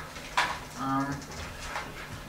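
Speech: a man's drawn-out, flat-pitched "um" in a meeting room, just after a short, sharp noise.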